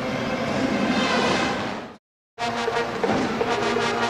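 A steady wash of arena noise fades out about two seconds in. After a brief gap of total silence, brass-led music starts, with sustained chords and noise underneath.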